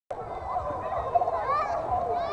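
Several children's voices shouting and squealing over one another, with water splashing.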